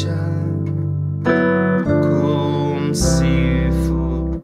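Piano chords sustained and changing about every second: a C major chord over G in the bass (G and D in the left hand, G C E in the right) moves through a couple of passing chords and resolves onto C major with a low C in the bass near the end.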